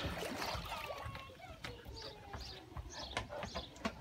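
Faint water splashing and trickling, with scattered small clicks and low voices in the background.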